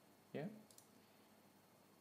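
Near silence: room tone with a couple of faint clicks from computer input, just after a single spoken word.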